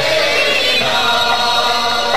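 Algerian Andalusian nouba ensemble: a choir of voices singing a sustained line in unison over the orchestra, steady and unbroken.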